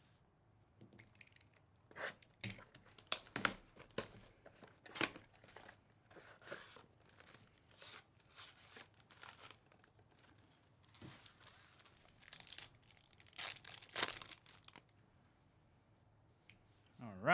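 A cardboard Panini Mosaic basketball mega box being torn open by hand and its pack wrappers ripped and crinkled, in irregular tears and rustles. The sounds are loudest about three seconds in and again near the end.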